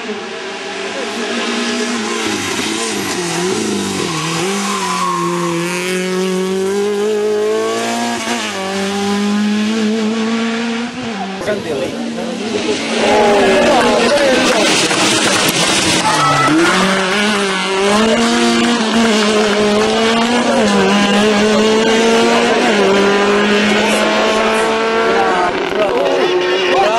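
A small rally hatchback's engine is revved hard at speed. Its pitch climbs through each gear and falls at each shift or lift-off. About halfway through the sound cuts to a second, louder pass.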